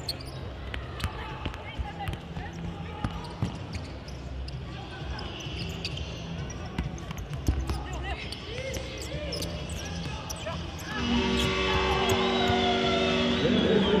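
Indoor football match in a sports hall: the ball being kicked and bouncing on the hard floor, shoe squeaks and players' shouts echoing in the hall. About three-quarters of the way through a louder sound with several held tones comes in over it.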